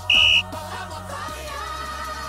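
One short, loud blast of a referee's whistle, a single steady high tone, about a tenth of a second in, signalling a foul call. Pop music with singing plays underneath.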